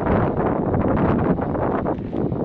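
Wind buffeting the microphone over the steady running of an LNER Azuma train pulling away down the line.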